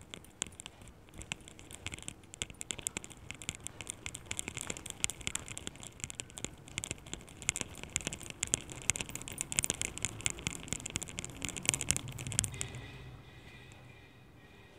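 Palms rolling a ball of modelling clay, a dense run of fast crackly rubbing and skin-friction clicks that stops near the end.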